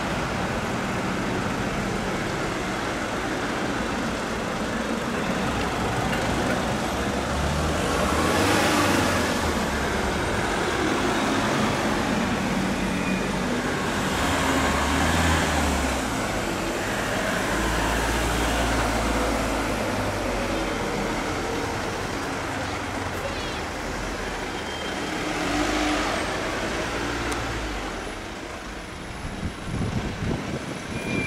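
A column of ambulance vans driving slowly past one after another, their engines and tyres swelling and fading as each goes by, with the loudest passes about eight, fifteen and twenty-six seconds in.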